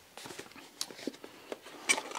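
Hands handling a small box: scattered soft taps and rubs as it is picked up and opened, with a sharper click near the end.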